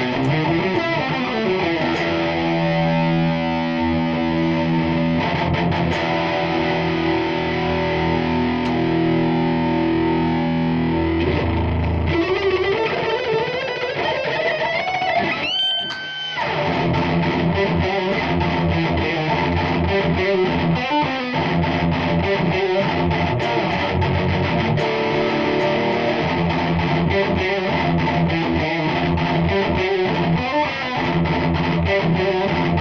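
Distorted electric guitar played through an amplifier stack: held chords, then a long rising slide ending in a high note about halfway through, followed by fast, rhythmic picked riffing.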